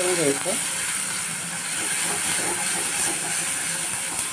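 Spiced mashed eggplant (bharit) frying in an oiled pan with a steady sizzle while a spatula stirs it.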